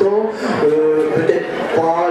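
A man's voice speaking, including a few drawn-out held sounds.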